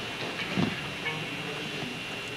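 A pause between pieces: hall room tone under a steady hiss from the recording, with a single soft low knock about half a second in.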